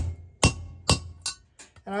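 Valve-seal installer tool being struck on a Honda B18C5 cylinder head, driving an exhaust valve stem seal onto its guide: several sharp metallic strikes about half a second apart, each with a short ring, fading after the first three. The changed ring of each hit means the seal has bottomed out and is fully seated.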